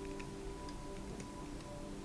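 Soft spa music with held, sustained tones, over a faint scatter of light, irregular clicks and ticks.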